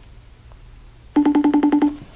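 Smartphone call tone starting about a second in: an electronic note pulsing rapidly, about ten times a second, then stopping just before the end.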